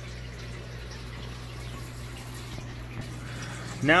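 Aquarium water trickling and splashing steadily, as from a tank filter's return flow, over a low steady hum.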